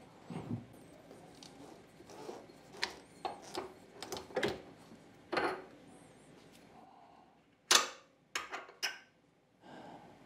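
Scattered light clicks and knocks of metal lathe parts being handled by hand at the spindle end, an aluminium multi-groove pulley among them, with a few sharper clicks near the end.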